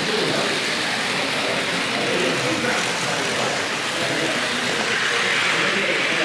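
Märklin H0-scale model trains rolling on track, making a steady rushing clatter of wheels on rails, with faint voices in the background.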